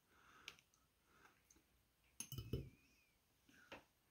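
Near silence with a few faint clicks and a soft knock as a small glass bowl of blue bubble mix is handled and a bubble wand is dipped in it.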